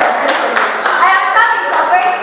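Hand claps, a few a second, over a woman's amplified speech.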